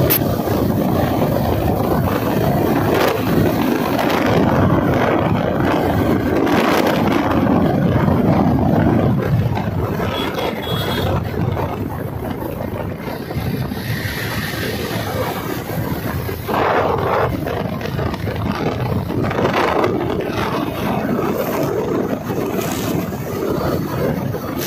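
Motorcycle riding at speed: wind buffeting the phone's microphone over the engine and tyre noise, a steady rushing noise that swells and dips.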